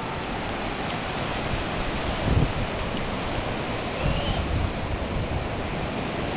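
Pacific surf breaking and washing up a sandy beach, a steady rush, with a couple of brief low rumbles around two and four seconds in.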